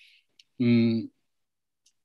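A man's voice in a pause of speech: a short breath, a small mouth click, then one held syllable of about half a second, followed by silence.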